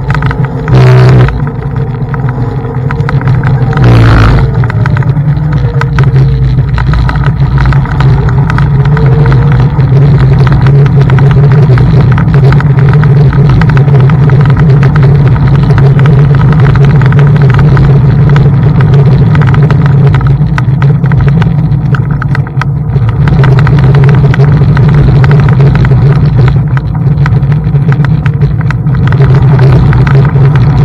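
Steady, loud rush and rumble of riding a Xiaomi M365 Pro electric scooter along a path, with two sharp knocks about one and four seconds in.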